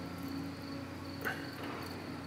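Quiet room tone: a steady low hum with a thin high whine over it, and a short soft scrape of a metal spoon scooping avocado flesh a little past halfway.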